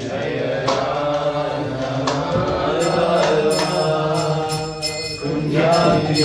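Devotional group chanting of a mantra, with metal hand cymbals (kartals) joining about halfway through and striking in a steady rhythm.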